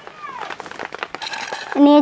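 A faint call that falls in pitch, about a quarter of a second in, then a woman's voice starting to speak near the end.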